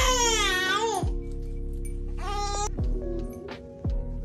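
A newborn baby crying: one long wailing cry that rises and falls over about the first second, then a shorter cry about two and a half seconds in. Background music with steady held notes plays under it.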